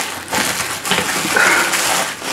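Clothes and the fabric of a soft suitcase rustling as packed clothes are pressed down under its compression strap, with a short high squeak near the end.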